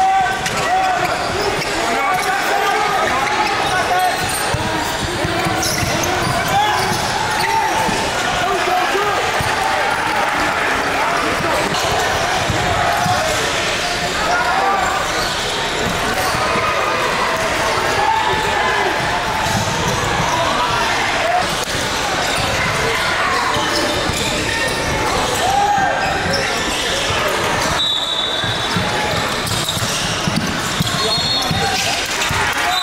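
Live basketball game in a large gym: a basketball bouncing on the hardwood court under the continuous calls and chatter of players and spectators, echoing in the hall.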